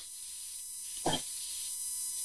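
Steady hiss of a phone-call line with a faint steady tone under it, and one brief short sound about a second in.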